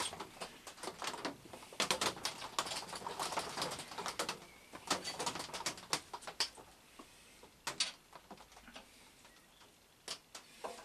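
Metal clicks, clinks and scrapes of hand tools, an Allen key among them, being worked on a mill drill while its column bolts are loosened. The sounds come thick and fast for about six seconds, then thin out to a few isolated clicks.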